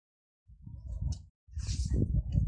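Fingers rubbing and fumbling over a phone's microphone: after a silent start, uneven low rumbling and scraping handling noise begins about half a second in, breaks off briefly, then returns louder.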